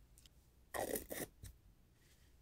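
A short, quiet scrape about a second in, followed by a faint tap.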